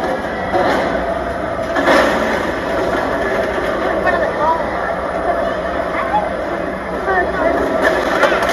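Arena din: crowd voices over the steady running of the Megasaurus car-eating robot machine as it holds a car up in its jaws.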